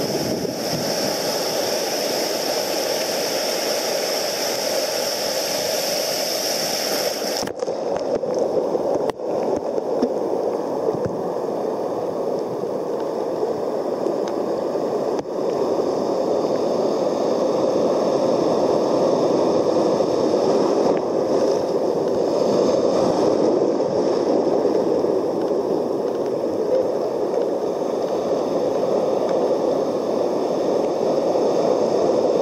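Ocean surf and sloshing water close to the microphone, a steady rushing wash, broken by a few sharp knocks in the first half.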